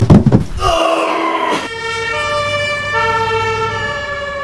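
A loud thump right at the start, then an ambulance siren sliding upward in pitch for about a second. Near the middle it cuts off, and steady keyboard-like notes take over.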